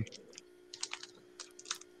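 Faint, irregular light clicks and taps, keyboard-like, over a low steady hum.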